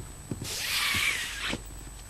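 Soft rustle of a satin ribbon bow being handled, lasting about a second, with a few faint clicks before and after.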